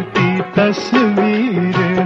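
Old Hindi film song playing between its sung lines: a single melodic line with sliding ornaments over a steady accompaniment.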